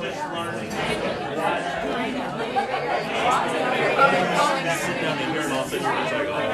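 Many overlapping voices chattering in a room, with no single voice standing out: the background talk of an audience between songs.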